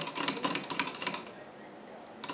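A thin stirrer tapping and rattling against the inside of a clear plastic cup as food-coloured water is stirred: a run of quick, light clicks that thins out and fades about halfway through.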